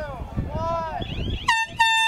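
Lacrosse game horn signalling that time has run out and the game is over, sounding two blasts about one and a half seconds in, the second longer than the first.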